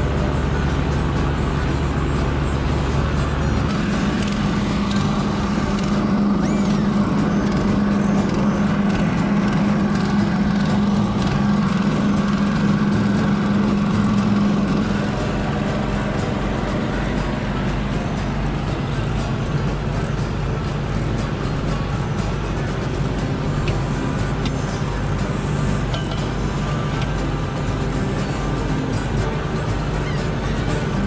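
Shrimp trawler's engine running steadily, its low hum changing tone about four seconds in and easing off around fifteen seconds.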